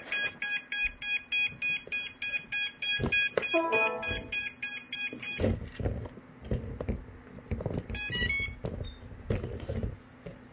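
A racing quadcopter beeping fast and evenly, about three high beeps a second, until the beeping cuts off suddenly about five seconds in, as the flight controller reboots. A short run of falling tones comes partway through and a short run of rising tones near the end, with handling knocks in the second half.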